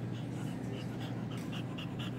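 A Shetland sheepdog panting quickly and evenly over a steady low hum.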